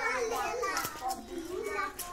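Boys' voices talking, a child's voice continuing with hardly a pause.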